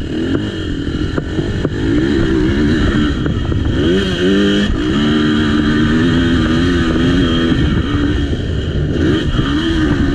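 Beta 450 four-stroke single-cylinder dirt bike engine running under throttle, its pitch rising and falling with the rider's throttle. The revs climb about four seconds in, drop back and hold steady for several seconds, then climb again near the end.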